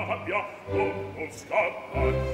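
Opera singing with orchestral accompaniment: a voice sings short phrases with vibrato over the orchestra.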